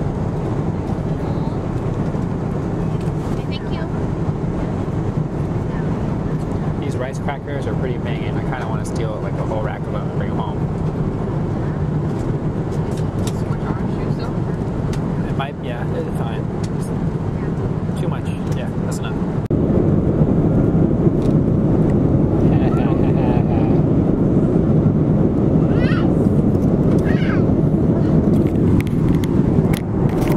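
Steady airliner cabin drone in flight, the engine and air noise of the passenger cabin, stepping up louder about two-thirds of the way through. Voices are heard now and then over it.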